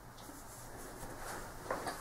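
Quiet room tone with a few faint short clicks.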